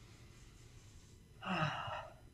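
Near silence, then a man's audible breath out about one and a half seconds in, lasting about half a second.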